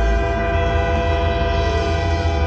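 A live banda brass band holding one long sustained chord through the PA, many brass and reed notes sounding together over a low pulsing bass.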